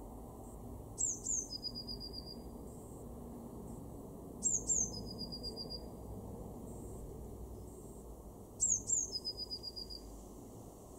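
Blue tit singing three song phrases, each two thin, high descending notes followed by a trill about a second long, repeated every three to four seconds.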